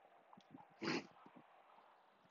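Near silence, broken once about a second in by a short, soft breathy noise.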